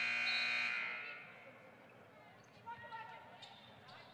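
The last sound of the preceding clip rings away over about the first second. Then faint live sound from a basketball court follows: a few short, faint noises from players and the ball about three seconds in.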